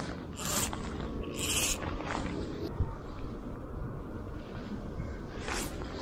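Wind rumbling on the microphone, with a few brief hissing scrapes of fly line being pulled in by hand.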